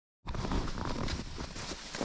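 Footsteps of a walker in snow, starting about a quarter second in.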